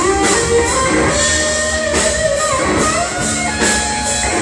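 Rock band playing an instrumental passage: electric guitar with held and bent notes over drums and cymbals.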